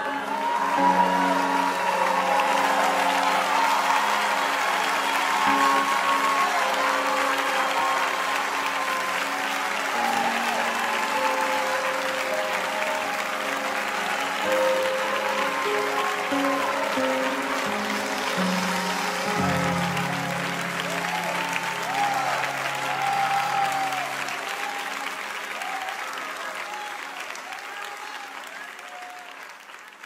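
Applause from a crowd over sustained, held chords as a live worship song ends, fading out gradually over the last several seconds.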